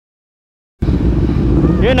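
The sound cuts out completely for almost the first second, then comes back abruptly as motorcycle engines idling with a low rumble, with a man's voice starting near the end.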